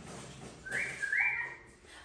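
Yellow-naped Amazon parrot whistling two short notes a little under a second in; each rises and holds a high pitch, and the second falls at its end.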